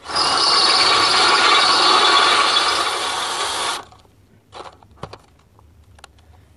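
A power tool running steadily for about four seconds, then stopping abruptly, followed by a few light knocks.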